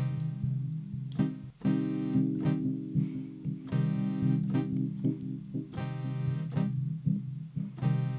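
Software modular synthesizer patch (two VCOs through an ADSR envelope, low-pass filter and delay) playing a repeating run of short pitched notes over a steady low tone, the notes' decay and release being reshaped as the ADSR envelope knobs are turned.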